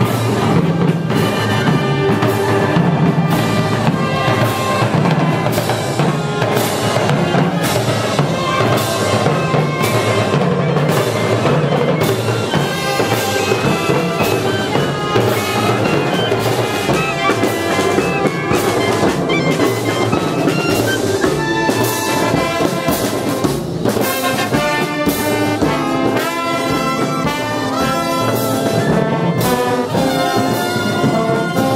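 Marching brass band playing in the street: trumpets, trombones, tuba and saxophones over snare and bass drums keeping a steady beat.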